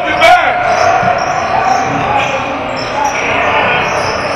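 Indoor basketball game: a sharp ball bounce about a third of a second in, then players running on the hardwood and voices echoing in the large gym.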